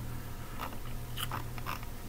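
A few short, soft clicks, spread irregularly, over a steady low hum.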